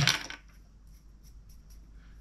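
A single short clink of a small hard object at the very start, ringing briefly, followed by quiet room tone with faint handling clicks.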